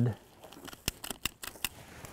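A quick run of about six sharp clicks in under a second from a hand stapler fastening a paper bud cap over a pine seedling's top bud to protect it from deer browsing.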